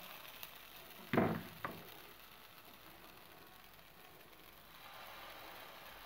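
Faint, steady sizzle of pancake batter cooking in a hot non-stick frying pan over low heat. Two short knocks come about a second in.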